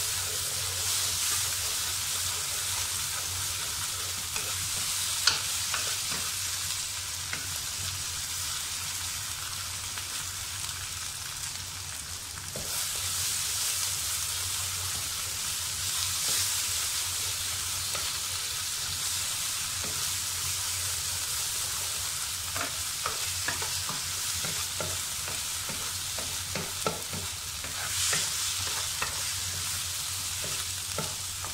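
Prawns, onion and sambal paste sizzling in hot oil in a wok, stirred with a wooden spatula that scrapes and knocks against the pan. There is a steady sizzle with scattered taps, one sharper knock about five seconds in.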